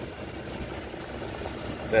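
Steady low hum in a pickup truck's cab, with no clear rhythm or change in the pause between words.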